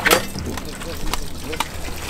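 Indistinct voices on a dive boat's deck over a steady low engine hum, with a few sharp knocks of handled gear.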